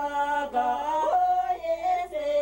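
A solo voice singing a slow melody, holding each note and then stepping up or down to the next, with a small ornamental turn near the middle.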